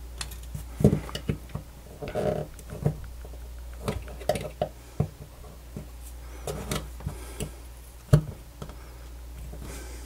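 Irregular small plastic clicks, taps and scrapes from the white plastic housing of an AUKEY SH-PA1 smart plug as it is handled and its glued lid is pried at with a metal pick. The loudest knocks come about a second in and again about eight seconds in.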